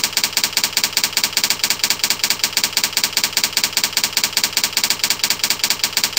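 Typewriter sound effect for text typing onto a slide letter by letter: a rapid, very even run of sharp clicks, about eight or nine a second.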